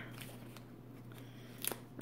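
Faint rustling as adhesive mounting-foam squares are peeled off their backing sheet, with one sharp click near the end.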